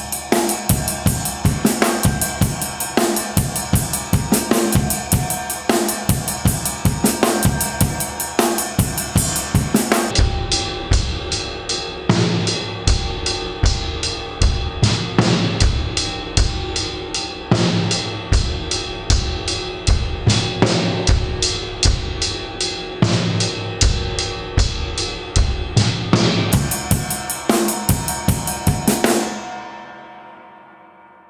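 Drum kit playing a groove in 7/8 time grouped two-three-two (counted 1-2-1-2-3-1-2), with bass drum, snare and cymbals. The playing stops just before the end, and a ring fades out.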